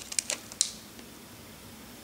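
A few light clicks and crackles of a plastic wax-tart clamshell being handled, all within the first second.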